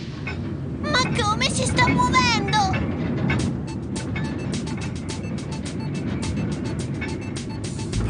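Eerie cartoon soundtrack: a low rumbling drone, with wavering, gliding pitched cries about a second in, then a quick run of sharp clicks for the rest.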